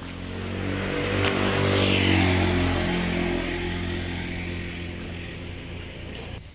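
Engine of a passing motor vehicle, swelling to its loudest about two seconds in and then slowly fading away.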